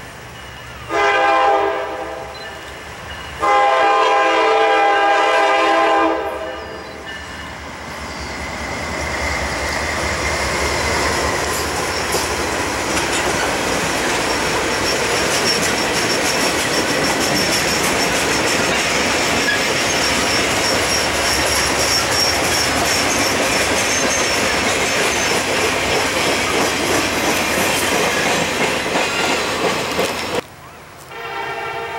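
Freight locomotive horn, a GE Dash 9-44CW's, sounding a short blast and then a longer one for the crossing. It is followed by a heavy, slow-moving train rolling past: the clickety-clack of the many wheels of a heavy-load car carrying a generator, with a thin wheel squeal over it.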